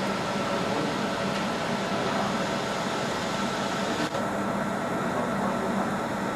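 Steady whirring hum of a 50 W fiber laser marking machine running while it engraves a stainless steel plate, with a small click about four seconds in.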